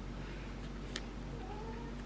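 A domestic pet's faint, short call with a gliding pitch in the second half, over a steady low hum, with one faint click about a second in.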